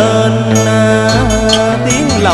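A male voice holds a long sung note in a cải lương song over instrumental accompaniment. The note bends near the end, and two sharp clicks sound within it.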